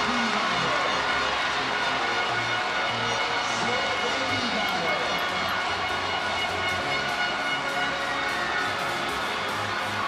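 Arena PA music playing over a cheering, noisy volleyball crowd, at a steady level throughout.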